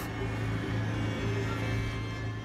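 A steady low hum with faint held tones above it.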